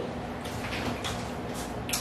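Low room noise with a few faint clicks and soft scrapes of tableware being handled at a meal.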